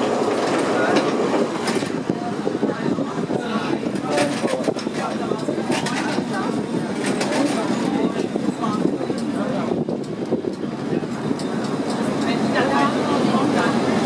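Vintage electric tram running along street rails, heard from inside the car near the driver's controls: a steady rolling rumble with clicks and rattles from the car body, with people's voices underneath.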